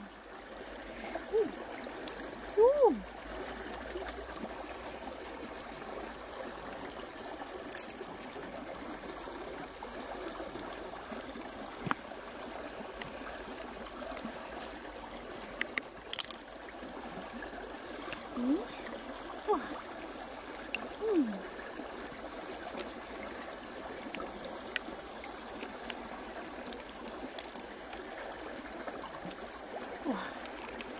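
Steady sound of running stream water, with a few short falling vocal exclamations ("oh!") and a few faint clicks as the pearl mussel is handled.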